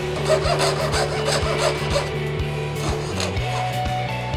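Jeweller's piercing saw cutting through a soft cuttlefish-bone mold block with a steady back-and-forth rasp, over background music.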